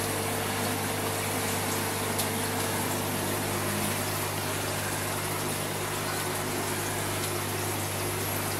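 Aquarium pump running: a steady low hum with a continuous wash of moving water.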